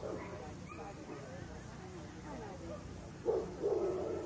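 A dog barking twice about three seconds in, a short bark and then a longer one, over low background voices.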